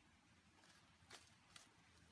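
Near silence, with two faint short ticks, one a little past a second in and another half a second later.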